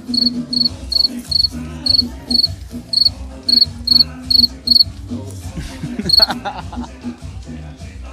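A cricket chirping: short, evenly spaced, high-pitched chirps about two and a half a second for nearly five seconds, then one more after a short pause.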